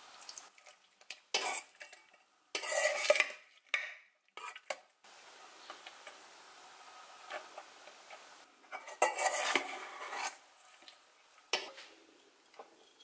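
Metal spoon clinking and scraping against a stainless steel mixing bowl as ingredients are spooned in and stirred, in a few short bursts with quieter gaps between them.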